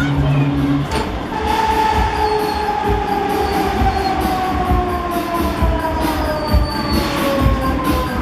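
Break Dancer fairground ride's drive whining, the whine falling slowly and steadily in pitch from about a second in as the spinning ride slows down, over regular low thumps.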